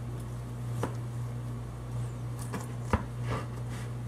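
Kitchen knife cutting through a rack of smoked ribs on a wooden cutting board: a few short knocks and scrapes of the blade, the sharpest about three seconds in.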